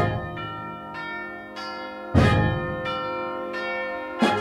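Bells ringing a slow series of strokes, about one every half second or so, over a held chord from a concert wind band. One deeper, louder stroke comes about halfway through.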